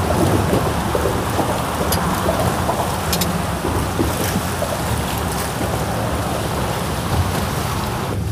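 Wind buffeting the microphone over choppy water slapping the hull of a small boat: a steady rushing noise with an irregular low rumble.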